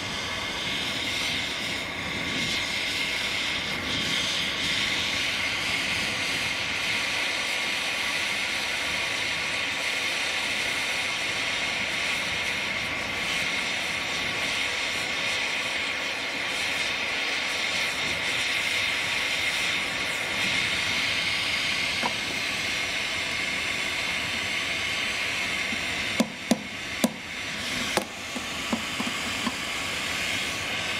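Gas torch flame hissing steadily while it heats a small steel ring held in tongs. Near the end, a few sharp metallic taps of a hammer on the ring over the anvil.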